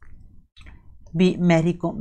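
A person speaking Hindi from about a second in, after a second of low background hum broken by faint clicks.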